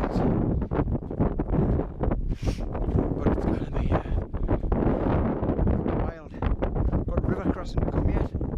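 Strong wind buffeting the camera microphone in gusts, with a deep, unbroken rumble that dips briefly about six seconds in.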